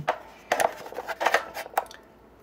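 A C-size Ni-MH cell being set into a plastic charger bay against its sliding spring contact: a handful of light clicks and knocks, the last two close together near the end.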